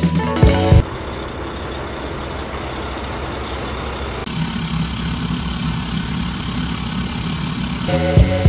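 Background music with a beat stops about a second in. A steady rushing noise with no rhythm follows, changing in tone abruptly about four seconds in.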